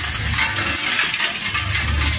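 Large bells worn by Krampus runners jangling and clanking as they move, a dense and continuous metallic clatter.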